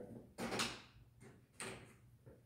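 Dry-erase markers handled in the tray along the bottom of a whiteboard: two short clatters about a second apart.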